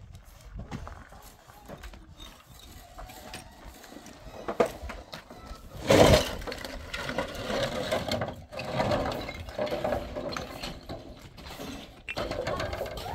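A metal wheelbarrow loaded with broken stones rattling as it is pushed over rough ground, then tipped about six seconds in: a loud crash as the stones hit the pile, followed by several seconds of clattering as they slide out.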